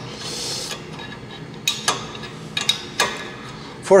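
A steel spanner clinking against bolts and a steel brake-adapter bracket as the bolts are fitted by hand. There is a brief rustling hiss at the start, then four sharp metallic clinks over the last two and a half seconds.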